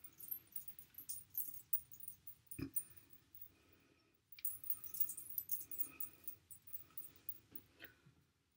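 Hair being handled and braided close to the microphone: rapid crackly rustling of strands in two spells, with a single soft knock about two and a half seconds in.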